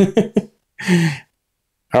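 A person laughing in a few quick short bursts, then a breathy exhale or sigh about a second in.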